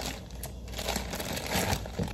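Plastic bag of Brussels sprouts crinkling and rustling as it is handled, a steady run of irregular soft crackles.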